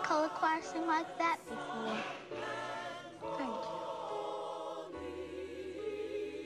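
Church choir singing, with one voice running quickly up and down the notes in the first second or so, then the choir holding sustained chords with vibrato.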